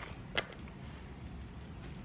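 A single short, sharp sound about half a second in, over a steady low background hum.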